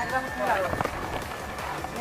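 A man's voice talking indistinctly close by, with a faint steady high tone in the first half.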